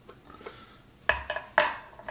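A metal spoon scraping seeds out of a spaghetti squash half, with a few faint clicks and then several sharp clinks and knocks about a second in, the loudest just before the end.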